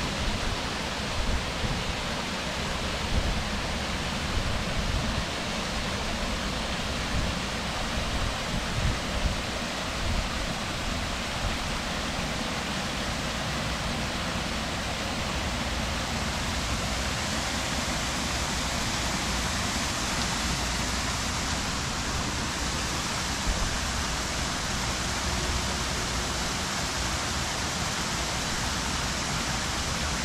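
Steady rushing splash of a small garden waterfall falling into a rock-lined pond, with some irregular low rumble and a few louder bumps in the first dozen seconds.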